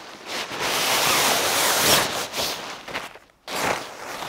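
Nylon tent fabric rustling as the tent is pulled from its stuff sack and unfolded: a long rustle lasting about two seconds, then a shorter one near the end.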